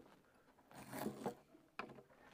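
Faint scrape of the pickup cover and its screw being worked loose by hand on the guitar top, then one sharp click near the end.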